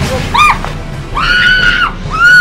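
A woman screaming during a physical struggle: a short cry about half a second in, then a long, steady high wail in the second half, over background music.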